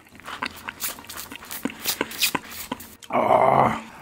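Close-miked chewing of grilled corn on the cob: a run of crisp clicks and smacks from the kernels. About three seconds in, a loud, low, growling vocal groan lasting under a second.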